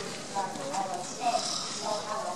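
A person talking into a microphone, the voice carried over a loudspeaker.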